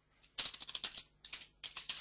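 Typing on a computer keyboard: three quick runs of keystrokes, starting about half a second in.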